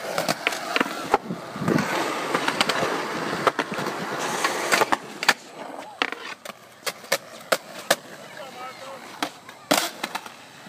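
Skateboards rolling on a concrete skatepark, with many sharp clacks of boards and wheels striking the concrete. The rolling noise is loudest in the first half, and a hard double clack comes near the end.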